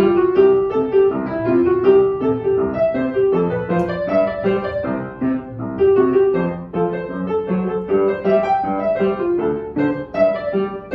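Upright acoustic piano played solo with both hands, a continuous flow of quick notes with no pauses.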